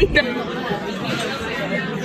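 Overlapping chatter of many diners in a restaurant, a steady murmur of voices. Just before it, a car interior's low rumble and one spoken word cut off abruptly.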